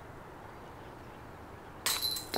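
Near the end, a disc golf putt strikes the metal basket with a sudden metallic clash and a short ringing tone; the disc hits high left and drops out, a chain out.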